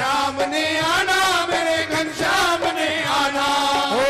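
Live Punjabi devotional bhajan music: a sung melody of long held notes that glide up and down, over continuous accompaniment.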